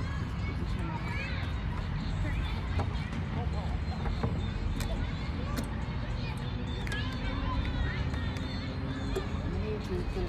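Outdoor park ambience: a steady low rumble with faint bird chirps and soft, indistinct voices, all at an even level.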